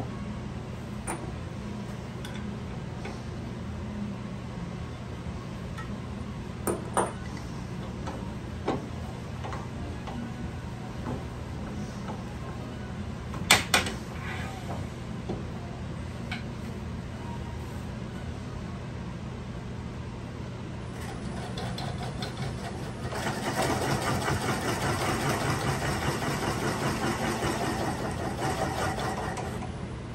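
Wood lathe running with a steady low hum and a few light knocks. From about 23 seconds in, a louder rasping noise as a drill bit in a half-inch tailstock chuck bores into the spinning walnut blank. The bit is one that was not resharpened.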